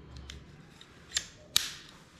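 Manual staple gun snapping twice against a wooden canvas stretcher frame, two sharp clicks about a third of a second apart, the second louder.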